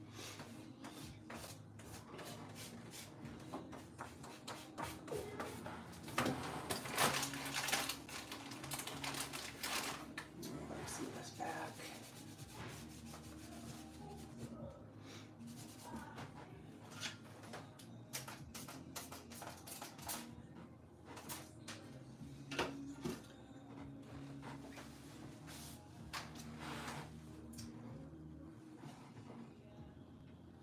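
Quiet background music under the scratchy rubbing and dabbing of a paint-loaded sponge on paper, strokes coming in irregular runs and busiest a few seconds in.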